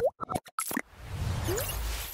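Animated logo intro sound effects: a quick run of short pops and small rising blips in the first second, then a rising whoosh with a low rumble that fades out just after.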